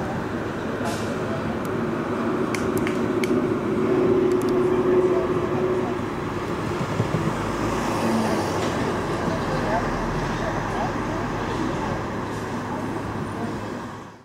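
City street ambience: steady traffic noise mixed with indistinct voices of a small group, with a steady engine hum a few seconds in and a few sharp clicks. It fades out at the very end.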